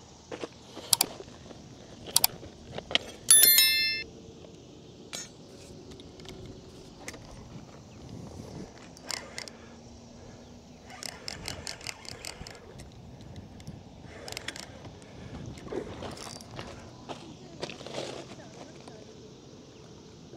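Scattered sharp clicks and clinks with a brief, loud, bell-like metallic ring about three and a half seconds in, and a quick run of ticking about halfway through, over steady outdoor background.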